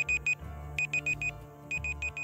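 Countdown timer sound effect: bursts of four quick, high digital beeps, like an alarm clock, about one burst a second. Soft background music runs beneath.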